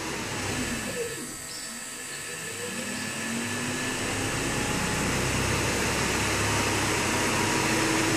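AC induction motor driven by a home-built field-oriented-control inverter, spinning down and then speeding up again the other way toward full power. Its whine falls in pitch over the first second or so, dips quiet briefly, then rises steadily in pitch and loudness.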